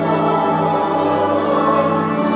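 Church choir singing long sustained chords with organ accompaniment.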